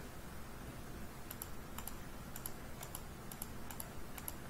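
Computer mouse button clicked repeatedly, each click a quick press-and-release pair, starting a little over a second in and coming about twice a second, over a faint low hum.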